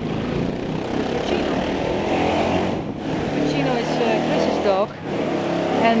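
Steady outdoor street noise with a motor vehicle's engine running, and faint voices in the background.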